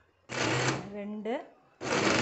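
Electric mixer grinder pulsed twice, its motor whirring as it shreds cooked chicken in the steel jar. The first run starts about a quarter second in and lasts just over a second. The second starts near the end.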